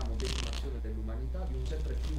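A man's voice speaking faintly, with a short rustling hiss near the start and a steady low hum underneath.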